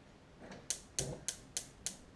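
A run of sharp, evenly spaced clicks, about three a second, starting about half a second in.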